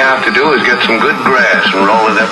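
A fast, radio-like voice, part of an animated outro jingle, running on without pauses over a faint steady high tone.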